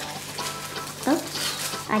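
Crinkling and rustling of foil burger wrappers as blindfolded hands unwrap and handle the burgers, with a brief voice sound about a second in.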